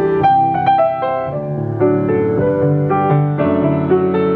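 Yamaha C3 6'1" grand piano being played: a run of ringing chords, with lower bass notes coming in about a second and a half in.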